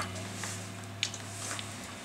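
Steady electrical hum from a guitar amplifier rig, with one sharp click about a second in as a light switch is flipped; the hum fades near the end.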